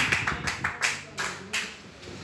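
A short run of sharp taps, several a second, thinning out and stopping about a second and a half in.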